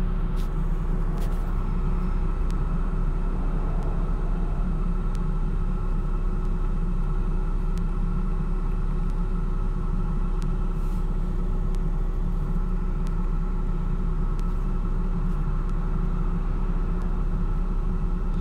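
A steady low rumble with a faint constant hum, continuous and even in level, with a few faint clicks scattered through it.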